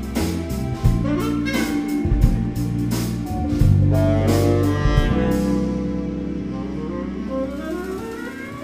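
A live jazz band, with drum kit, electric bass, keyboards and saxophone, playing an improvised piece. The drums stop about five and a half seconds in, and the music tails off on held notes.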